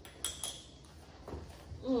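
Two quick, light clinks of kitchen utensils about a fifth of a second apart, as the spice jar and measuring spoon are handled.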